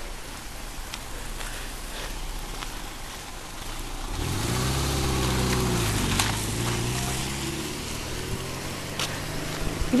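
A car's engine drawing near: its note rises about four seconds in, falls back as the car slows, then runs on at a low, steady pitch as it rolls up and stops.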